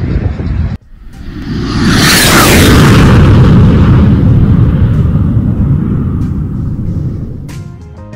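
Logo-intro sound effect: a rising whoosh that swells into a long, deep rumbling boom and fades slowly over several seconds. Music with plucked notes starts near the end.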